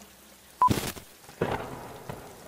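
Thunder-and-lightning sound effect: a brief beep about half a second in, then a sharp crack, followed by a softer rumble.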